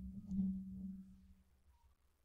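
Faint low steady hum of room or recording noise with a soft low murmur, cutting off suddenly about one and a half seconds in, leaving silence.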